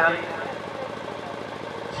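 A man's commentary voice breaks off just after the start, leaving a pause of steady low background noise until speech resumes at the very end.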